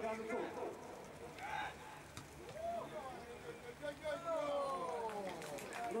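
Men's voices shouting and calling out during a live football match, in short calls with longer falling shouts around four to five seconds in. There is one sharp knock about two seconds in, over steady open-air background noise.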